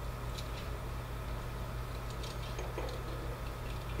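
Quiet, steady low hum with a few faint, light clicks scattered through it.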